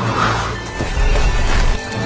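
Loud film-score music mixed with a car's engine racing past.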